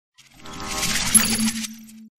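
Short channel logo sting: a sound effect that swells up over about a second, peaks in a single bright chime just over a second in, then fades out over a held low tone.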